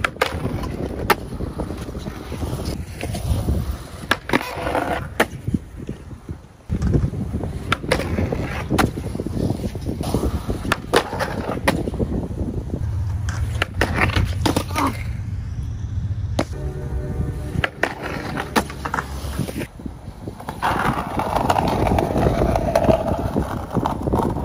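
Skateboard wheels rolling on concrete, a steady low rumble, broken by many sharp clacks of the board being popped and landing during flip tricks.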